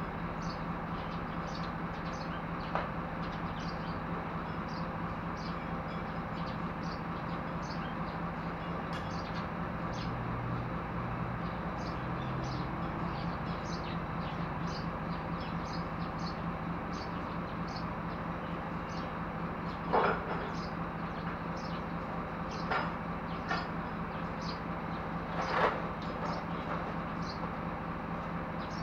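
Truck engine idling steadily, with a constant low hum. A few metal clanks and knocks come in the last third, the loudest about two-thirds of the way in, over short high chirps that repeat throughout.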